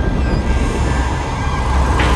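Heavy rain pouring steadily, with a deep rumble underneath.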